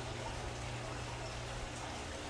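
Steady flow of water running from inlet pipes into the hatchery troughs of a recirculating aquaculture system, with a steady low hum beneath it.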